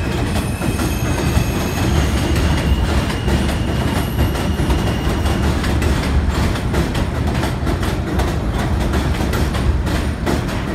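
NYC Subway R160 train rolling past on elevated track: steady wheel-and-rail rumble, with a faint steady high whine in the first half and clicking over the track joints growing in the second half.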